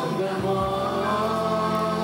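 A congregation singing a worship song together, many voices holding a long note.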